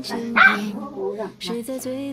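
A dog gives a short yelp about half a second in, over soft background music of steady held notes.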